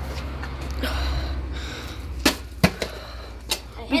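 Several sharp knocks in the second half: a small toy spade striking a plastic drink bottle on concrete steps. They follow a stretch of rustling and low rumble from handling.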